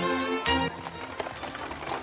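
Music with sustained notes, which stops about half a second in. A horse-drawn cart follows, with the horse's hooves and the cart clattering quickly and unevenly.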